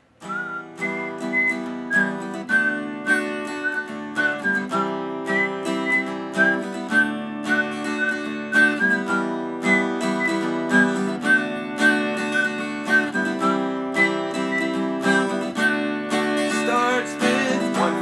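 Acoustic guitar tuned down a half step, playing an Em–D–C–D chord progression in a steady rhythm with high single notes ringing out over the chords.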